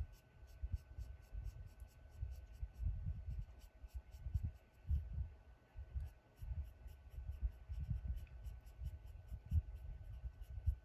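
Colored pencil scratching across paper in short, quick shading strokes, a few a second, with soft irregular low thumps and a faint steady whine behind it.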